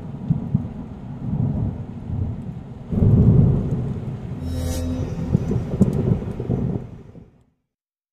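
Thunder rumbling over rain, with a louder roll about three seconds in, then fading out near the end.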